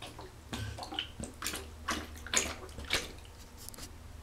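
German shepherd lapping water from the bottom of a bathtub: a run of irregular wet laps, about two a second, some louder than others.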